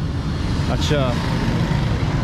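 Steady low rumble of street traffic, with a short spoken word about a second in.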